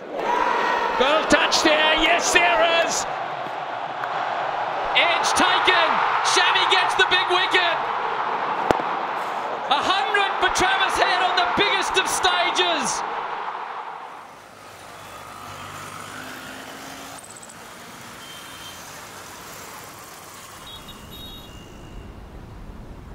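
Large cricket-stadium crowd noise with a commentator's voice and sharp bat-on-ball cracks. About fourteen seconds in it falls away to much quieter outdoor street ambience with faint traffic.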